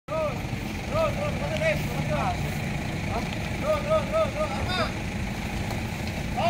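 A vehicle engine running with a steady low rumble, under several people talking at once in the background.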